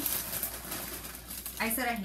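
Clear plastic bag of cereal crinkling and rustling as a hand digs into it, a soft crackly rustle for most of the moment.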